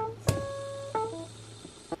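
Background music: a few held instrument notes that change about a second in, over a low sustained bass tone, with one sharp click about a third of a second in.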